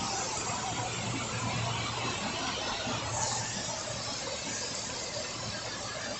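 Steady rain falling onto standing floodwater, an even hiss, with a faint low hum beneath it for the first few seconds.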